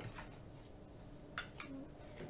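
Wire whisk stirring batter in a plastic bowl, folding whipped egg white into egg-yolk batter: soft stirring with a few light clicks of the wire against the bowl, the sharpest about one and a half seconds in.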